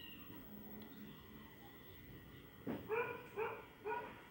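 A neighbour's dog barking: a quick run of four short, high yaps starting in the second half, after a faint quiet stretch.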